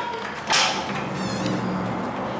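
A glass door being pushed open: a clunk about half a second in, then a brief high creak.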